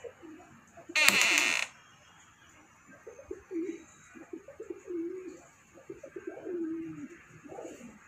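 Domestic pigeons cooing: a run of low, wavering coos from about three seconds in until near the end. About a second in there is one brief loud noise lasting under a second.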